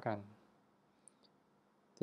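A few faint, short clicks about a second in, from a stylus tapping a pen tablet as the letter M is handwritten.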